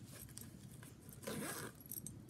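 Faint rustling and scraping of a red sequined zip-up phone holder being picked up and handled, louder for a moment about a second and a half in.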